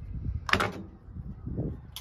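A dirty metal trailer wiring junction box being handled on a workbench: a short, sharp scrape-like clack about half a second in, then a softer low knock near the end.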